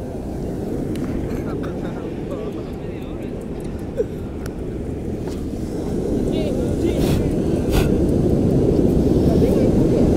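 Beach ambience after the song has ended: a steady low rumble of wind and surf that grows louder over the second half, with people's voices in the background. There are two sharp clicks about seven and eight seconds in.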